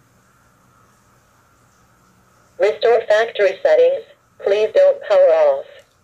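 A Wi-Fi pan-tilt security camera's built-in speaker plays a recorded voice prompt about two and a half seconds in, two short phrases over about three seconds. It is the camera's announcement that the reset button has been held long enough and the factory reset is starting.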